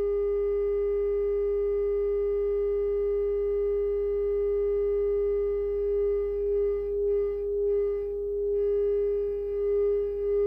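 Steady radio feedback tone from the boombox and microphone, held at one mid pitch with faint overtones. Its level begins to waver about six seconds in.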